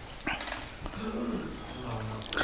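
Faint, brief voices and room noise in a pause between spoken lines, with a few soft clicks.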